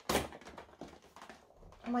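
A cardboard advent calendar door being pried and torn open by fingers: a short rip at the start, then faint scratching and rustling of card.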